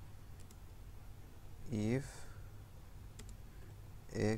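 Computer keyboard keys clicking a few times as code is typed, in two small groups: one near the start and one about three seconds in. A short vocal sound falls a little before the middle, over a steady low hum.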